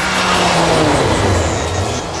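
Rally car passing close at speed, its engine note dropping in pitch as it goes by, with a swell of tyre and snow noise loudest in the middle of the pass.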